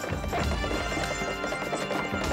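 Background music over the clip-clop of horses' hooves on a dirt track.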